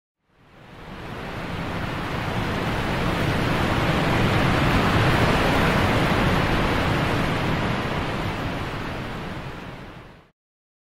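Rushing water sound effect like ocean surf, fading in, swelling to a peak about halfway through, then fading away.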